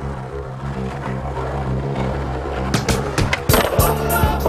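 Skateboard wheels rolling on smooth concrete, then a run of sharp clacks about three seconds in as the board is popped up onto a concrete ledge. A music soundtrack with a steady bass line plays underneath.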